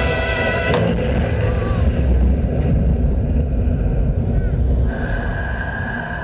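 Show soundtrack music breaking off about a second in, followed by a loud low rumble with murmuring spectators' voices; a single held high tone comes in near the end.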